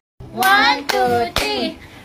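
Hand claps in a clapping game: three sharp claps about half a second apart, over a sung, counting chant.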